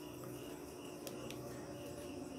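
Quiet room tone with a faint, high chirping that comes and goes a few times a second, and a faint click or two about a second in.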